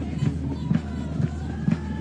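Soccer stadium ambience in a TV broadcast: crowd noise with faint music and a beat about twice a second.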